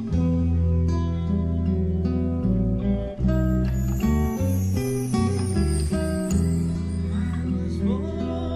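Instrumental passage of a song with guitars over sustained low bass notes that change every second or so, and no vocals. High descending sweeps come in from about three seconds in.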